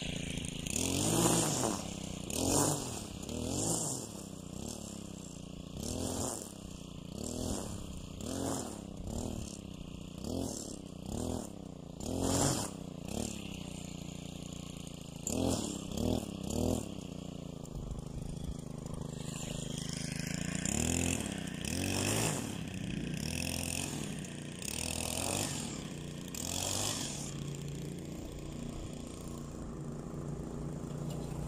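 Gas-powered string trimmer engine revved up and down over and over, every second or two, as the line cuts grass; in the last third it runs more evenly with fewer revs.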